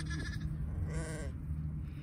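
A sheep bleating: one short, wavering bleat about a second in, with a fainter call right at the start.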